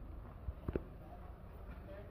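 Low, steady background hum of a shop interior, with two or three quick soft knocks a little under a second in.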